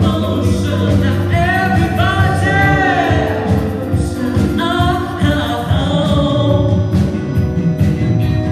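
Live band playing a funk-soul pop song, with drums, bass, electric guitar and keyboards, and singing over it in two long phrases with vibrato, the first about a second in and the second about halfway through.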